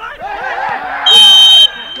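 Referee's whistle: one loud, steady, high blast of about half a second, starting about a second in, blown for a foul as a player goes down. Players' shouts and crowd voices around it.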